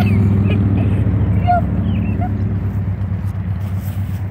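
A steady, low engine drone that slowly weakens, with a few faint short chirps over it.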